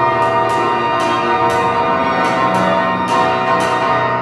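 Flute, B-flat clarinet, piano, violin and cello quintet playing the loud closing bars of a contemporary chamber piece: a dense, dissonant sustained chord with sharp struck accents recurring about three times a second.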